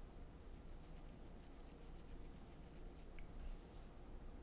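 Fingers scratching at a beard: a faint, quick scratchy rasp, about six strokes a second, that stops about three seconds in.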